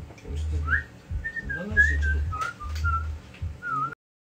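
A person whistling a short, wavering tune, with low bass notes underneath. The sound cuts off abruptly just before the end.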